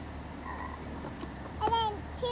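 Steady low hum of a car idling, heard from inside the cabin, with a short high-pitched voice rising and falling about one and a half seconds in and a faint small click just before it.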